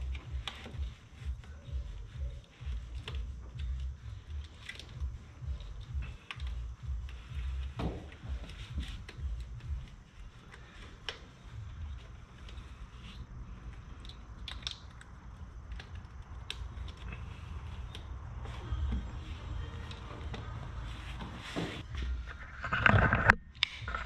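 Hands handling a wiring harness around an engine's coil packs: plastic connectors and wire loom rustling, with scattered small clicks and taps.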